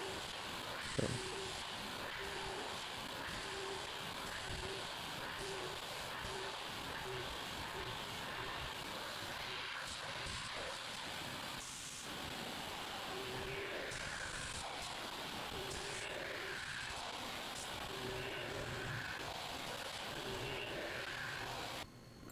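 Mori Seiki horizontal machining center milling aluminum jaws with a half-inch cutter: a steady hiss with a low hum that comes and goes as the tool cuts.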